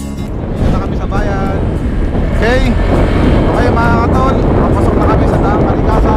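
Riding on a motorcycle: wind rushing over the microphone over a steady rumble of engine and road, with a few short voice sounds, one a sweeping call about two and a half seconds in.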